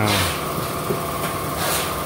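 A car engine idling steadily, a constant hum with no change in speed.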